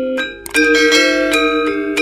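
Outro music of struck, ringing pitched notes that dips briefly just before half a second in, then comes back louder.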